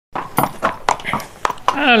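A horse's hooves knocking on brick paving as it is led out at a walk, a handful of irregular steps. A man's voice begins near the end.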